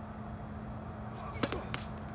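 Tennis ball struck by a racket and bouncing on an outdoor hard court: a sharp pop about one and a half seconds in, then a lighter one shortly after, over a steady low hum.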